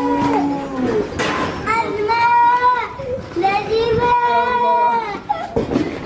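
A child wailing inconsolably in grief, in long high-pitched cries of about a second each with short breaks between, three in a row.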